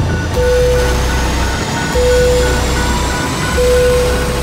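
Trailer score: a steady tone pulses about every second and a half over deep bass hits. Under it runs a fast, even ticking and a tone that rises slowly.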